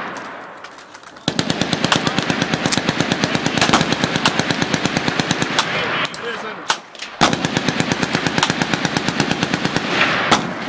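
Fully automatic gunfire: a long rapid burst starts about a second in and stops near the middle, then after a brief break with a couple of single shots, another long rapid burst runs to the end.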